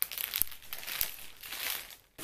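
Clear plastic bag around a bundle of hair extensions crinkling and rustling irregularly as it is handled, with a few sharp crackles.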